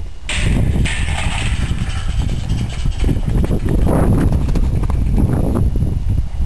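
Hoofbeats of a Paso Fino stallion running circles on the soft dirt of a round pen, over a heavy, uneven low rumble.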